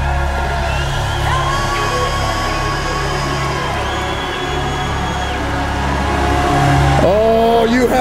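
Church worship band holding sustained chords over a steady bass, with the congregation shouting and cheering in praise. A man's voice comes in near the end.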